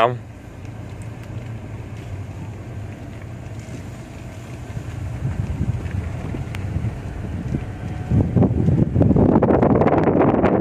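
Wind buffeting the microphone over a steady low rumble. The buffeting swells and grows loudest over the last two seconds.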